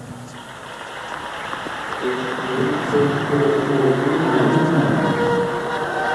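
Arena crowd applauding and cheering after a gymnastics routine, swelling steadily louder, with music playing in the hall from about two seconds in.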